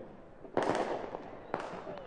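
Two sharp firework bangs about a second apart, each trailing off in a reverberant wash.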